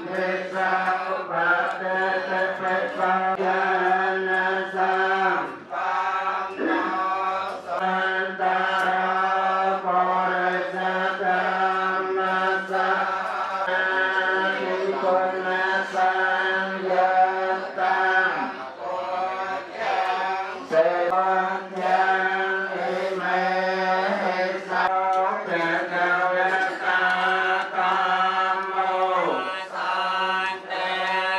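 A group of voices chanting together in a Buddhist chant. They hold a steady reciting tone, and the lines break briefly every several seconds.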